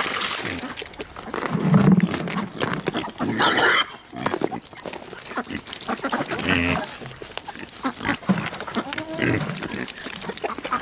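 Kunekune pigs grunting as they crowd in to be fed, with louder calls about two, three and a half and six and a half seconds in. Many short clicks and crunches sound between the calls.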